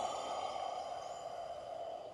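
A slow, deliberate exhale of a paced breathing exercise: a steady breathy rush of air lasting about two seconds.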